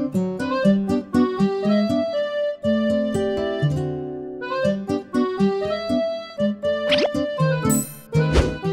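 Light background vlog music of short, bouncy notes, with a brief break about two and a half seconds in and a quick rising sweep near the end.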